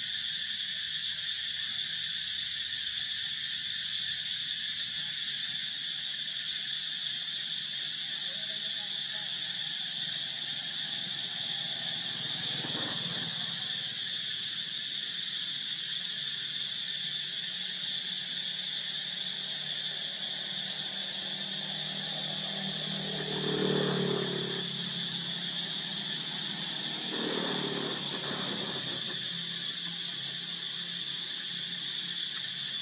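A steady high drone of insects throughout, with short macaque calls about halfway through, a louder one around 24 seconds in and another near the end.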